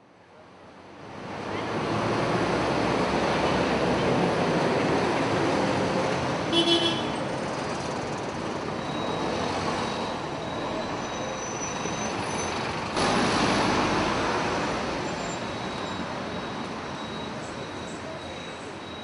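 Close street traffic, buses and cars, fading in over the first couple of seconds. A brief horn toot comes about six and a half seconds in, and a sudden louder surge of traffic about thirteen seconds in.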